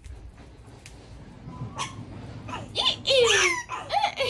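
High-pitched vocal squeals, each falling in pitch, starting about two and a half seconds in and loud.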